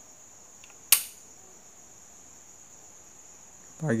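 A single sharp click of a wall light switch being flipped off, about a second in, over a steady high-pitched whine in the background.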